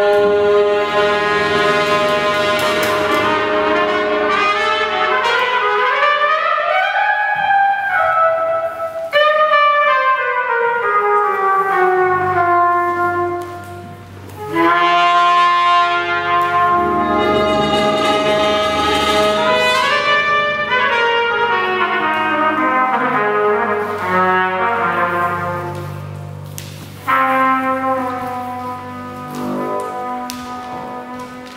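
Live brass-led jazz ensemble, with trumpet, trombone, tuba and saxophone, playing held chords whose pitches slide slowly up and down in long sweeps. The sound thins briefly about halfway through, then the band comes back in, with a fresh entry near the end.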